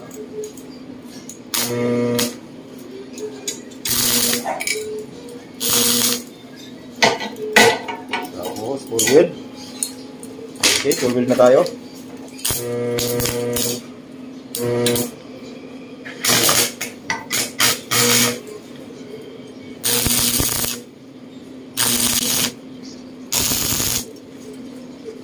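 Arc welder striking a run of short tack welds on steel: a crackling arc burst of under a second, repeated every one to two seconds, over the welding machine's steady hum. In the middle there is a stretch of irregular clicks and metal handling between tacks.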